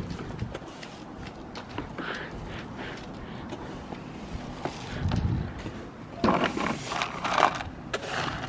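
Stiff-bristled broom sweeping scraps of cracked, dried-out plastic lifeline covering across a boat deck into a plastic dustpan: bristles brushing and small pieces scraping and clicking, with louder sweeping strokes about six seconds in.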